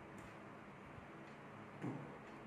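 Quiet room tone with faint ticking. A short burst of a man's voice comes near the end.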